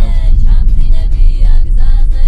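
Heavy, steady low rumble of a vehicle driving on a rough gravel road, heard from inside the cabin. Faint music and snatches of voices sit over it.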